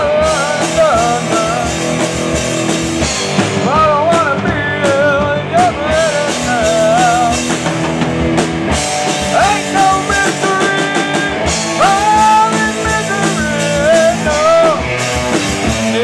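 Live punk rock from a small band: electric guitars and a drum kit playing with a sung vocal over them.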